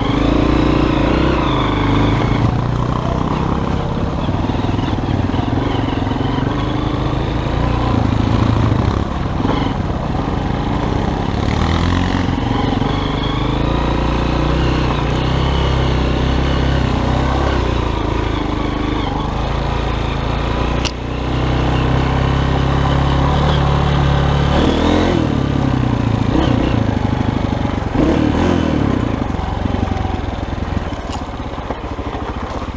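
Honda CRF230F's single-cylinder four-stroke engine running as the bike is ridden, its revs rising and falling with the throttle over rough ground. A sharp click about two-thirds of the way through.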